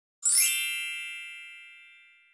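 A single bright chime struck once, with a shimmering sparkle sweeping down in pitch as it sounds, then ringing on and fading slowly over about two seconds: the sound effect of an animated logo intro.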